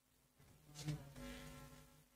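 Faint, steady low buzzing hum, with a short soft noise about a second in and a slight swell just after.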